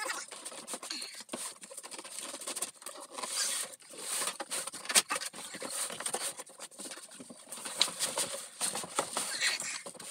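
Cardboard shipping cartons being handled: flaps and an inner box scraping and rustling against the outer box, with irregular small knocks and one sharp click about halfway through.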